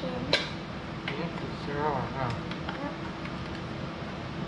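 A child's voice talking over a steady low hum, with one short sharp click about a third of a second in.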